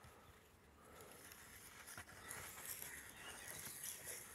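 Faint scraping of a garden knife's budding blade rubbed on an oiled sharpening stone, starting about a second in and growing slightly louder.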